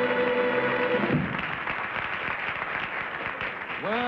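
The studio band's play-on music ends on a held chord about a second in, followed by the studio audience applauding.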